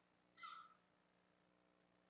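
Near silence: faint room tone with a low steady hum. About half a second in, a single brief, faint high-pitched sound breaks it.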